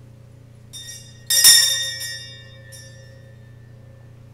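Small metal altar bells rung at communion: a light ring, then a loud ring that fades over about a second and a half, and a brief faint ring near the end.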